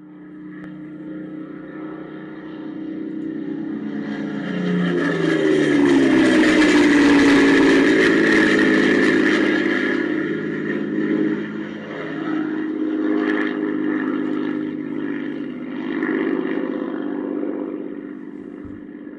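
A motor vehicle engine running, its pitch gliding down as it grows louder to a peak about seven seconds in, then slowly easing off.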